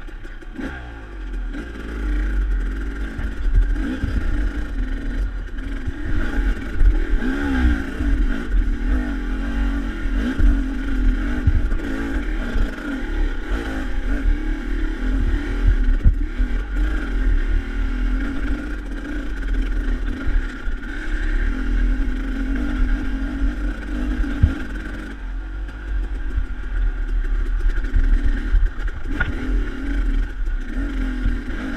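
KTM dirt bike engine revving up and down as the bike climbs a steep, rocky single-track trail, its pitch rising and falling with the throttle. Knocks from the rocky ground and a steady low rumble run under it.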